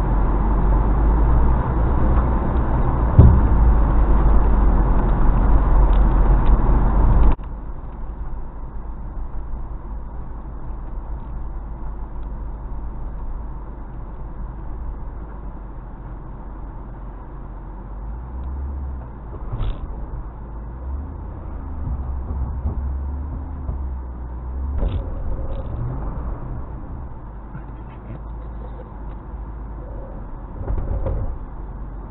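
Background music until about seven seconds in, where it cuts off abruptly. Then the low engine and road rumble of an off-road vehicle driving slowly over a dirt trail, with a few knocks.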